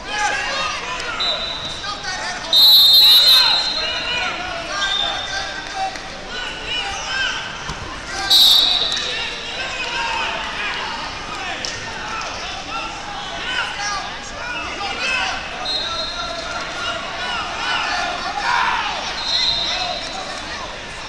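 Referees' whistles blowing in short, shrill blasts several times, the two loudest about two and a half and eight seconds in, over a steady din of many voices echoing in a large hall.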